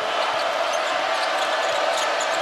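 Steady crowd noise in a basketball arena during live play, with the ball being dribbled on the hardwood court.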